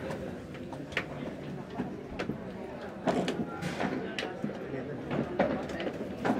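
Padel balls struck with padel rackets during a rally: a series of sharp pops at irregular intervals, over a background of voices.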